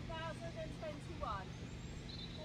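A high-pitched voice talking faintly over a steady low background hum.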